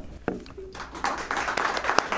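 A small audience bursts into applause about a second in, many hands clapping at once, welcoming the speaker who has just been introduced.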